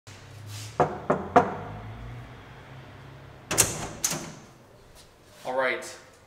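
Apartment front door being opened: three quick sharp clicks about a second in, then a louder clatter of the lock and latch at about three and a half seconds and another half a second later as the door swings open. A short rising-and-falling vocal exclamation comes just before the end.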